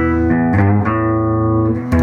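Gibson SG electric guitar played through a Henretta Engineering pUrPle OCTopus octave fuzz pedal, with the effect blended at about half against the clean signal. It plays thick, fuzzy sustained notes that change pitch a few times.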